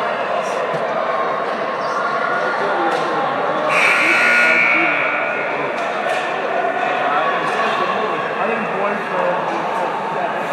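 Children's and adults' voices chattering and calling in a large, echoing ice rink, with short clacks of hockey sticks and pucks on the ice. About four seconds in, a loud high tone sounds for just over a second.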